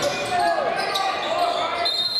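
Basketball game in a large gym: voices of players and spectators calling out over each other, with the ball bouncing on the hardwood floor.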